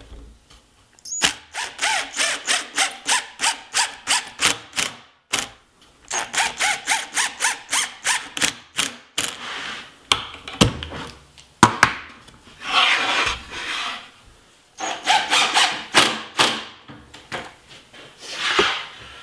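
Drill driving Kreg pocket-hole screws into a clamped face-frame joint, in several runs of rapid short pulses, about three to four a second, with the screws squealing in the wood.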